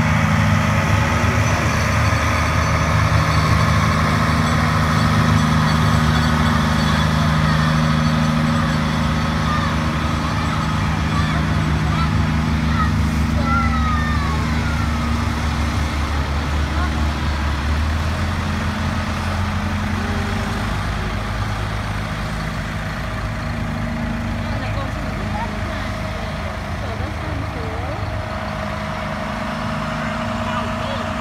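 Diesel engines of John Deere farm machines running as they drive slowly past: first a John Deere 6750 self-propelled forage harvester, then a tractor. A steady low engine note, which shifts a little past halfway, with voices in the background.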